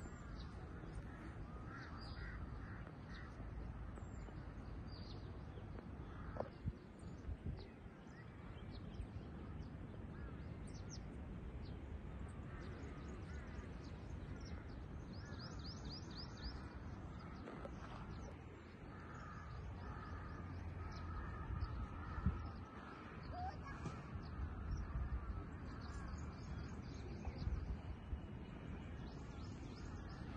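Birds calling outdoors, with short high chirps, a quick run of calls about halfway through, and crow-like caws, over a steady low rumble.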